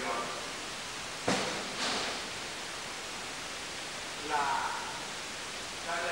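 Steady hiss of an old low-level speech recording during a pause in the talk. A single sharp knock comes about a second in, a short breathy rustle follows, and a brief spoken sound comes shortly before the end.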